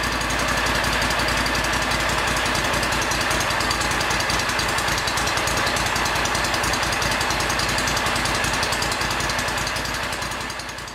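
Honda V-twin engine on a riding mower running steadily, with a fast, even pulse of firing strokes.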